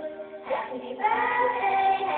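Karaoke backing music with a young child singing into a microphone; the singing grows louder about a second in on a held note.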